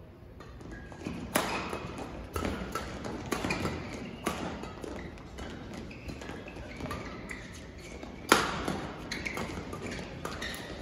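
Badminton doubles rally: rackets striking the shuttlecock in a quick exchange of sharp hits about a second apart, each echoing in a large hall. The loudest hit comes about eight seconds in.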